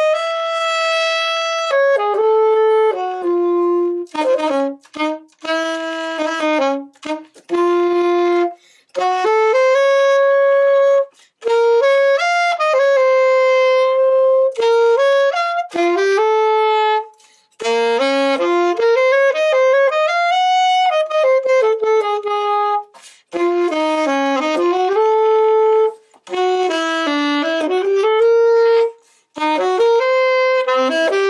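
Unaccompanied alto saxophone playing a melody of held notes in short phrases, with brief pauses for breath between them.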